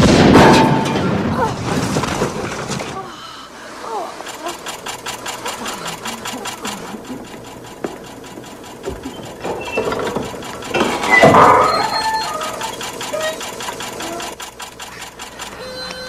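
A cash machine malfunctioning: a loud burst as it sparks and smokes, then a fast, steady mechanical rattle, with a second loud burst about eleven seconds in.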